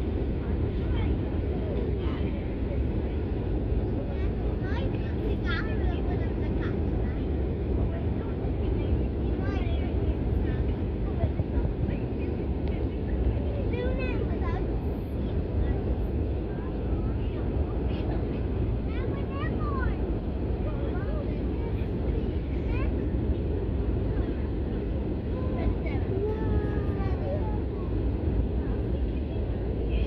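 Steady cabin noise of a jet airliner descending on approach: a constant low rumble of engines and airflow. Faint, indistinct passenger voices sound now and then in the background.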